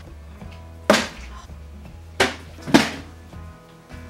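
Plastic water bottle being flipped and hitting the kitchen counter with three sharp knocks, one about a second in and two close together near three seconds in: unsuccessful bottle-flip attempts.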